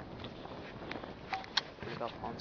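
Footsteps on grass and handling noise, with a few light clicks.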